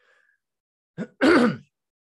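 A man clears his throat once, a short rasping voiced sound about a second in, after a moment of near silence.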